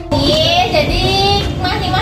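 A high, young voice singing in long, drawn-out notes that slide up and down, over a low rumbling background.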